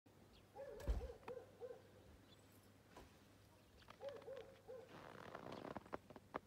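Faint animal calls: a series of four short hoot-like notes, then another three, each about a third of a second apart. A brief rustle follows near the end.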